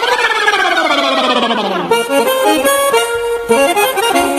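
A long shout that rises and then falls in pitch, followed about halfway through by a button accordion playing a quick run of notes over light percussion as the merengue típico (perico ripiao) song starts.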